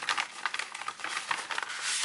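Kraft paper clasp envelope rustling and crinkling as its flap is opened and the papers inside are slid out, a run of dense, irregular crackles.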